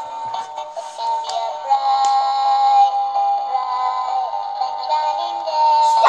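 A musical plush toy playing an electronic tune with a synthesized singing voice, in held notes that step from one pitch to the next.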